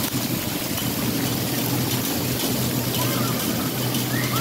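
Splash-pad water jets spraying and pouring down in a steady rush, with a steady low hum beneath. Faint short calls, likely distant voices, come near the end.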